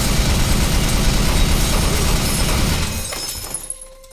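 A loud, dense crashing noise that holds for about three seconds and then fades out near the end.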